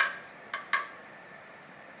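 Two faint short clicks from handling a sprinkler bottle being squeezed out, about half a second and three quarters of a second in, over quiet room noise.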